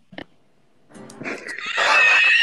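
After a brief near-silent pause, loud high-pitched laughter breaks out about a second in and swells.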